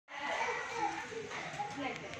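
Indistinct chatter of voices, children's voices among them, with no clear words.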